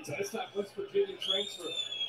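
A referee's whistle from the televised football game: one clear blast of just under a second, starting about a second in, that swells slightly and then falls away. Low broadcast commentary and crowd murmur run underneath.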